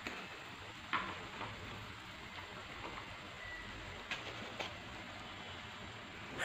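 Faint steady sizzle of a minced chicken and onion filling frying in a non-stick pan, with a few light clicks.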